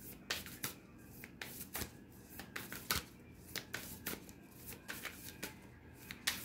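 Oracle cards being shuffled by hand: an irregular run of sharp card flicks and taps, a few each second, the loudest about three seconds in.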